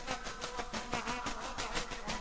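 Embolada music: a tambourine (pandeiro) struck in fast, even strokes, its jingles shaking, with a few held pitched notes over it.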